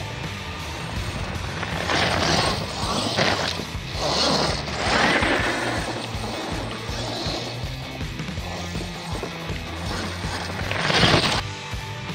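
Radio-controlled monster truck driving over icy snow, with several bursts of tyre and drivetrain noise; the loudest comes near the end. Background music plays throughout.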